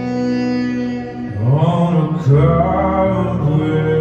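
Live acoustic music: acoustic guitar and violin playing held notes, joined about a second and a half in by a low male voice singing.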